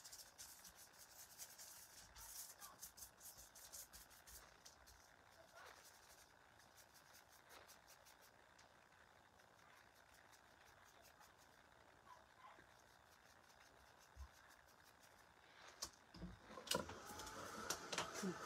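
Near silence with faint, quick ticking and scratching of a paintbrush dabbing paint onto a small cast embellishment. The ticking is densest over the first few seconds and thins out, and a couple of louder knocks come near the end.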